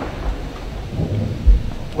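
Handheld microphone handling noise as the mic is passed to the next speaker: low rumbling with a few thumps, the loudest about one and a half seconds in.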